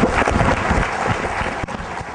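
Audience applauding, dense clapping that eases off a little near the end.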